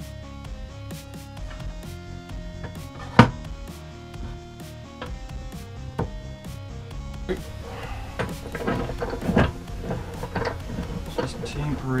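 Background music, with one sharp knock about three seconds in, then a run of wooden knocks and clatter in the second half as the glued acacia boards are handled and laid together on the workbench.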